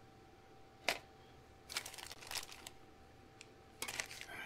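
Paper wrapping crinkling and rustling as it is unwrapped from a plastic model-car part: a single sharp click about a second in, then a flurry of crisp rustles around two seconds in, and more near the end.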